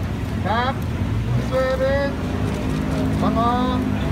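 A few short spoken words over a steady low background rumble and hum, like city traffic or an engine running.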